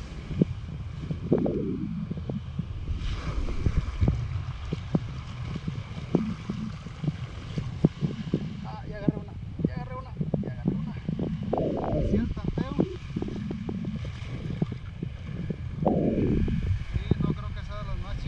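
Wind buffeting the microphone over surf in the shallows, a steady low rumble, with scattered clicks and knocks and a few brief fragments of a voice.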